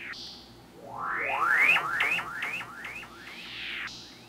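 Stylophone Gen X-1 synthesizer played through Drolo Molecular Disruption and Ezhi & Aka Moomindrone effects pedals: a long upward pitch sweep about a second in, then a quick run of short rising sweeps, about four a second, and one falling sweep near the end.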